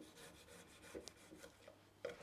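Faint sounds of a knife slicing a lime on a wooden chopping board: soft scraping and rubbing with a small click about halfway through.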